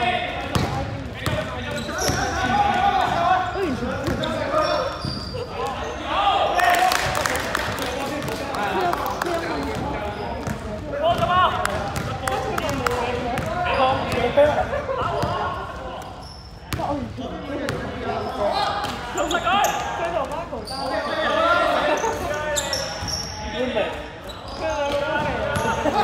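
A basketball bouncing on the court floor, repeatedly, among indistinct shouts and talk, all echoing in a large sports hall.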